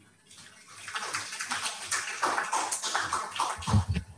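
Audience applauding, the clapping building up over the first second and holding on, with a few low thumps near the end.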